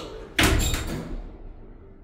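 Stannah lift's sliding car doors closing, meeting with a sudden loud thud about half a second in that dies away over the next half second.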